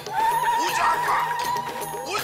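Soundtrack of a TV advertisement played on a hall's sound system: music with one long held high note, a voice or cry that wavers at first and then holds steady for nearly two seconds before breaking off near the end.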